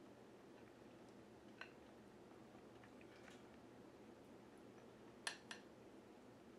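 Near silence with a few faint clicks of a spatula against a bowl as sauce is scraped out: one small click, then two sharper ones in quick succession near the end.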